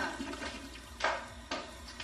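Water rushing in a restroom, like a toilet flushing, with two sharp clicks about a second and a second and a half in.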